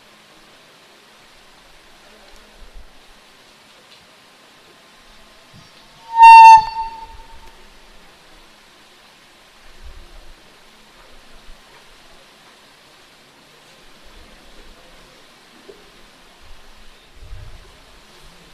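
A public-address microphone feeds back once, about six seconds in, with a sudden, very loud high squeal lasting about half a second. Otherwise only faint, steady room tone is heard.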